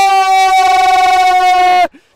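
A male football commentator's long held shout of "Goal!", one loud sustained call that breaks off near the end.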